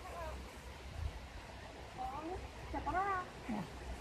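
A child's faint, high-pitched voice making a few short utterances, about two seconds in and again near three seconds.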